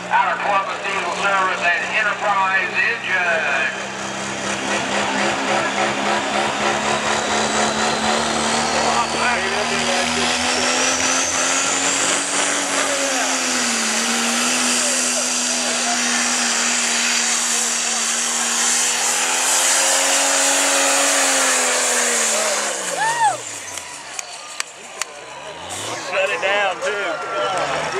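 A Cummins turbo-diesel in a Dodge Ram pickup pulling a sled at full throttle. The engine holds a steady, loud note while a high whine climbs in pitch, and the note dips briefly about halfway through. Near the end the engine pitch drops away as the throttle comes off.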